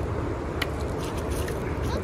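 Steady rushing noise of a fast-flowing river over rocks, with a couple of light clicks about half a second and a second and a half in.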